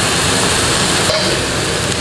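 Stir-fry sizzling in a hot wok: king oyster mushroom slices, peppers and scallion sections frying in oil, a loud steady hiss.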